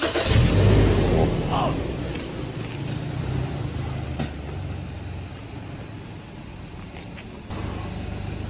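Toyota Land Cruiser Prado 150's petrol engine starting up with a brief, loud flare of revs, then settling down to a steady idle. It has a spirited sound.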